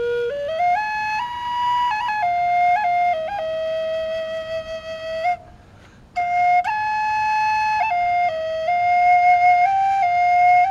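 High-toned B minor black walnut drone flute playing a slow melody: a phrase that climbs in steps at the start, held notes decorated with quick grace-note flicks, and a short breath break about five seconds in before the next phrase.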